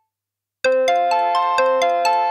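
Synthesized incoming-call ringtone: after a short silence, a ring cycle starts as a quick run of pitched notes, about four a second, each note struck sharply and ringing on.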